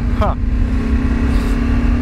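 Motorcycle engine running at a steady cruise while riding, one even note with a heavy low rumble beneath it.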